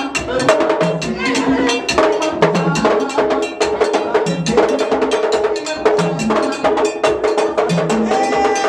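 Vodou ceremony percussion: a metal bell struck in a quick, steady pattern over drums.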